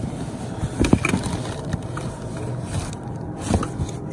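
Hands rummaging among items in a cardboard box: cardboard scraping and rustling, with a sharp knock just under a second in. A steady low hum runs underneath.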